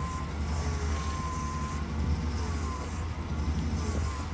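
1996 Chevy Silverado pickup running at idle as it creeps slowly: a steady low rumble.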